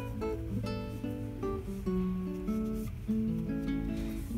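Background music: acoustic guitar picking a melody, a few plucked notes a second.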